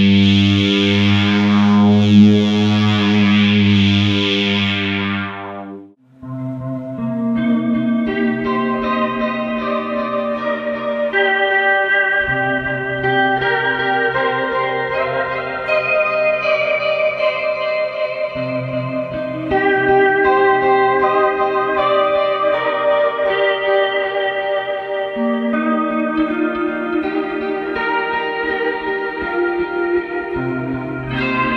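Electric guitar through a Line 6 Helix LT multi-effects unit. For the first five or six seconds a thick, buzzy, synth-like single-note tone (the "Big MonoSynth" patch) plays, then fades out and stops. After a brief gap comes a clean ambient patch ("Dream Syrup"), its notes sustaining and overlapping into a continuous wash.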